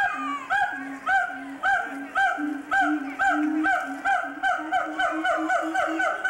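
A caged primate calling loudly in a rhythmic series of hoots, each rising then falling, about two a second at first and quickening toward the end, with a lower note sounding between the hoots.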